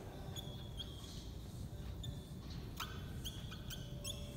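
Whiteboard marker squeaking against the board as lines are drawn: a series of short, high squeaks, one for each stroke.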